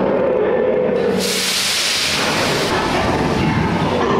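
Roller coaster train running through a dark show-building section, with a steady rumble. A loud hiss bursts in suddenly about a second in, lasts about a second and a half, then fades.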